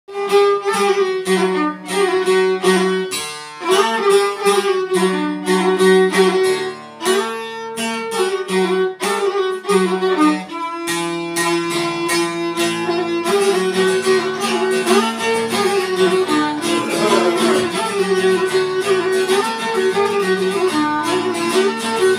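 Violin and a long-necked plucked Albanian folk lute playing an instrumental folk tune together. The phrases are clipped and stop-start at first, and run on more continuously from about halfway through.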